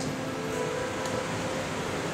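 Steady room noise, a low even hiss with a faint hum that fades near the end, from the hall's air conditioning and sound system.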